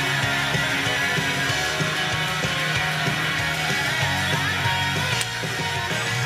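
Rock-style idol pop song playing loudly over a live sound system, with guitar and a steady beat.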